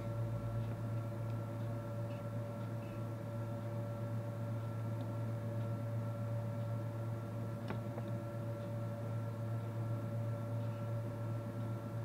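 Steady low mains hum from a large toroidal transformer feeding a bench power supply kit that is driving a lamp load, with a single faint click about two-thirds of the way through.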